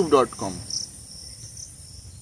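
Insects chirring steadily in the background as a faint, high-pitched buzz, heard plainly once a man's voice stops about half a second in.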